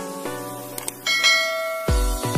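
Background music with held tones, then a bright bell-like chime sound effect about a second in, the ding that goes with a notification bell. Just before the end, a heavy electronic beat with deep kick drums starts.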